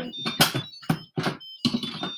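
Plastic lid of an electric pressure cooker being fitted and twisted to lock: a run of short knocks and scrapes about every half second, with a faint high squeak.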